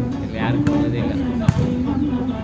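A volleyball being struck, a sharp smack about one and a half seconds in, with a lighter hit earlier. Background music and crowd voices carry on throughout.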